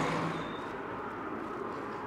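A car going by on the road, its noise fading away over the first half second.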